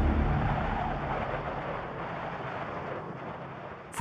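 Blizzard wind blowing, a steady rushing noise that slowly fades.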